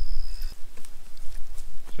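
Outdoor background with a steady low rumble and a high, steady insect trill that cuts off suddenly about half a second in, followed by faint scattered rustles.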